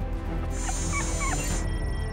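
A small dog whimpering, several short high whines in the first second and a half, over background music. A high hiss runs under the whines for about a second.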